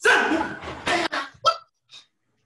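A man's short, sharp shouts, karate counts or kiai given with force: a loud call at the start, quick sharp cracks about a second in, and a brief shout at about a second and a half.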